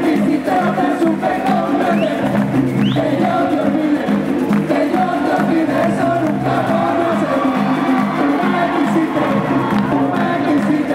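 Live Puerto Rican bomba y plena band playing: several voices singing together over hand drums keeping a steady, even beat.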